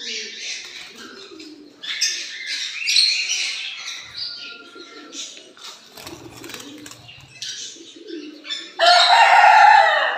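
Caged lovebirds chirping and chattering shrilly in short overlapping bursts, with a loud surge of calling in the last second.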